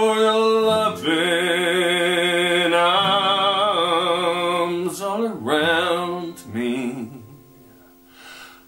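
A man singing long, held notes with vibrato to a strummed steel-string acoustic guitar. The singing stops about seven seconds in and the sound falls away.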